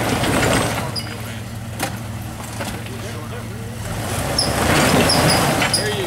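Jeep Wrangler TJ's engine running at low crawling speed with a steady drone as it works down over loose rocks, swelling louder near the start and again about four seconds in as the tyres grind over stones. A single sharp knock about two seconds in.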